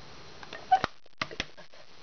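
A few small clicks and knocks of a plastic ink pad being handled and set down on a tabletop, with one short squeak among them.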